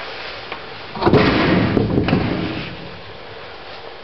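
A door clattering and rattling, starting suddenly about a second in and dying away over about a second and a half.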